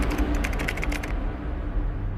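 Keyboard-typing sound effect: a quick run of clicks for about the first second, over a low steady hum.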